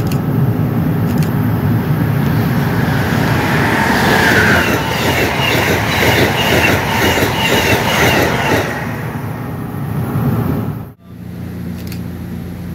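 Amtrak passenger train passing at speed, a loud rumble with a rapid rhythmic clatter of coach wheels over the rail joints. The clatter fades away about three-quarters of the way in.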